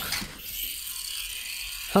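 Small DC drive motors of an Arduino line-follower robot running with a steady high whir as the robot drives backwards instead of following the line, a sign of a fault in its code.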